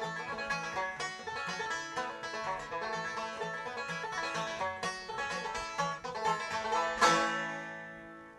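A resonator banjo and an acoustic guitar picking a bluegrass-style instrumental close. About seven seconds in they strike a final chord together, and it rings out and fades.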